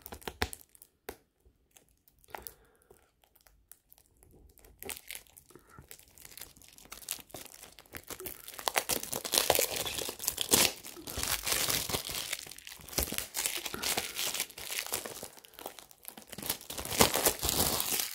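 Clear plastic shrink-wrap being picked at and peeled off a Blu-ray case: a few faint scratches and clicks at first, then dense crinkling and tearing of the thin plastic from about eight seconds in.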